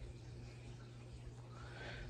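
Quiet room with a low, steady hum; near the end, a faint brief tone rises and falls.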